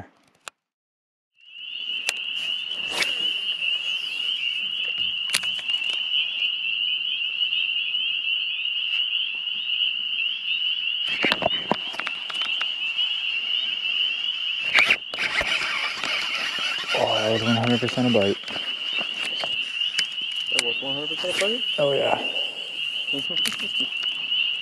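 A continuous high-pitched chorus of frogs calling.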